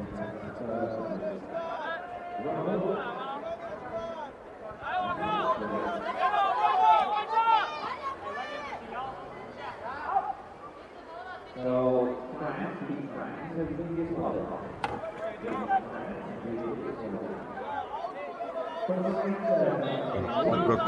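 Voices talking: a man speaking among overlapping chatter, with one voice briefly louder about twelve seconds in.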